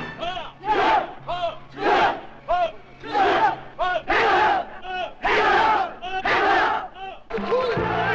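A large group of karateka shouting kiai in unison with their punches: a string of short, sharp group shouts about one a second, some louder than others.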